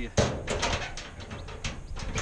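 Hinged metal door of a truck-side storage box being shut: one sharp knock shortly after the start, followed by several lighter knocks and rattles over the next second and a half.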